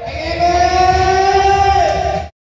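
A man singing long held notes through a PA microphone over a karaoke-style backing track with a steady beat.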